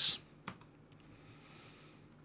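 A keystroke on a computer keyboard, one sharp click about half a second in, then near-quiet room tone.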